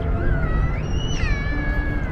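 A single meow-like call that rises and then falls in pitch over about a second, heard over soft background music and a low rumble of wind.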